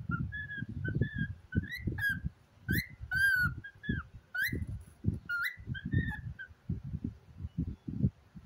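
A cockatiel whistling and chattering in a run of short notes, some gliding up and some falling, which stop about six and a half seconds in. Irregular low rumbling and bumps run underneath.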